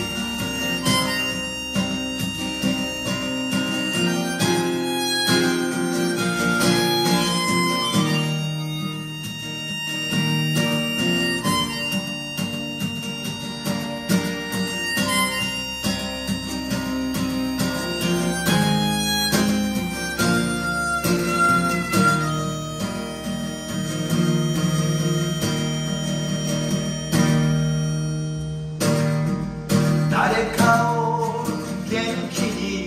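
Harmonica playing an instrumental solo over a strummed acoustic guitar, with no singing. The harmonica drops out near the end as the player goes back to his guitar.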